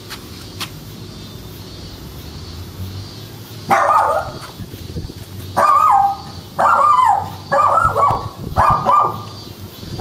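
A dog barking repeatedly, starting a few seconds in, at roughly one bark a second, each bark dropping in pitch; the barks are loud over a low steady background.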